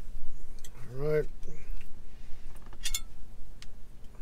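A metal fork clinking and clicking as it is picked up, with one sharp clink about three seconds in. A short wordless sound from a man's voice comes about a second in.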